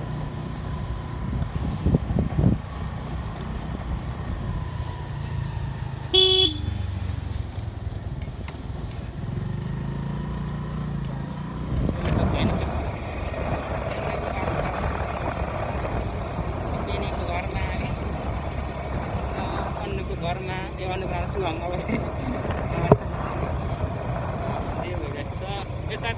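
Motorbike running along a road, a steady low engine and road rumble with wind on the microphone. A vehicle horn toots once, briefly, about six seconds in.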